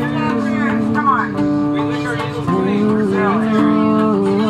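Live folk jam: a shahi baaja, a keyed electric zither, holds sustained plucked-string notes that step to a new pitch about once a second. Over it a woman sings a sliding, wordless vocal line into a microphone.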